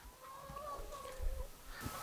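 A laying hen making a faint, drawn-out, slightly wavering call for about a second and a half, over a low rumble.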